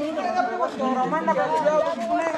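Several men's voices talking and calling out over one another: group chatter.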